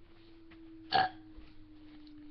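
A girl's single short cough about a second in.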